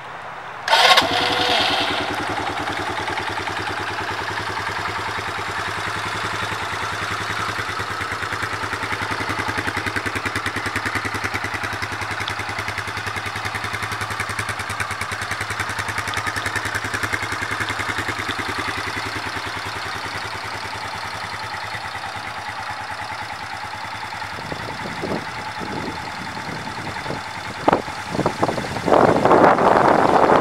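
Polaris Phoenix 200 ATV's single-cylinder four-stroke engine starting about a second in, then idling steadily. Near the end the sound turns uneven, with a few louder bursts.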